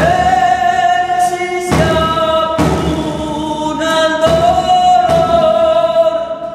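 Men singing a slow Argentine folk song in long held notes, accompanied by a nylon-string guitar and a few strokes on a small hand-held frame drum beaten with a stick.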